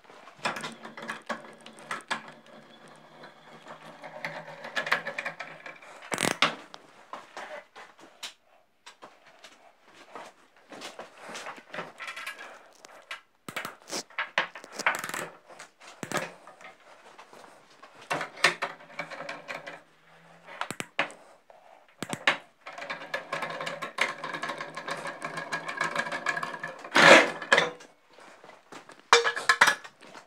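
Knocks and clatter of metal parts and tools being handled at a motorcycle, with a steady hum that comes and goes three times.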